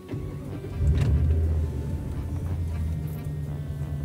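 A car's engine coming on unexpectedly and running at a steady idle, heard from inside the cabin: a low hum that starts at once and grows louder about a second in. The occupants take it for the car turning itself on.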